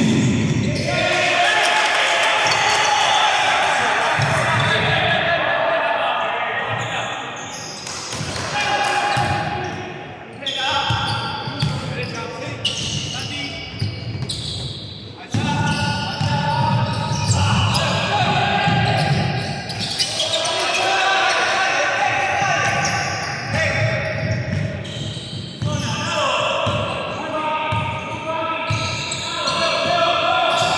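Live basketball game sound in an echoing gym: the ball bouncing on the hardwood court amid players' voices calling out on the court.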